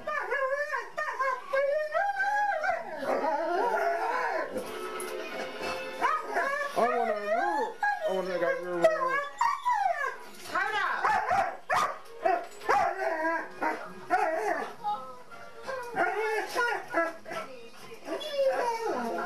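Dogs howling and whining in long yowls that rise and fall in pitch, one after another with short breaks.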